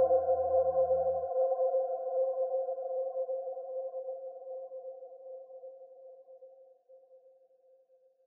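The closing synthesizer chord of a drum and bass track, held and fading slowly away to silence. A deep bass note under it stops about a second in.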